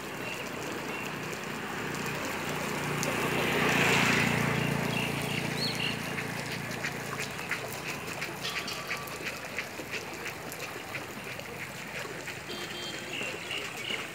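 Floodwater running with a steady rushing noise, swelling louder for a few seconds with a peak about four seconds in, then settling back.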